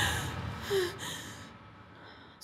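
A woman's single sharp gasp as she is startled awake, with the tail of background music fading out at the start.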